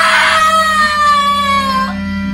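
A long, high-pitched cry held for about two seconds, sinking slightly in pitch before it breaks off near the end.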